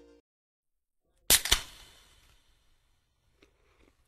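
A guitar song's last note dies out just after the start, then silence, then two sharp cracks about a quarter of a second apart, each ringing out briefly, followed by a few faint clicks.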